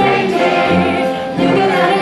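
A choir singing a Christmas carol, many voices together on sustained notes.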